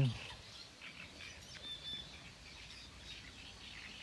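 Faint, scattered bird chirps and calls, with one short, steady, high whistle a little under two seconds in.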